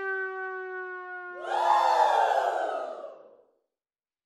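Sitcom sound-effect sting: a held note that sags slightly in pitch, joined about a second and a half in by a falling swoosh. Both fade out shortly before the end.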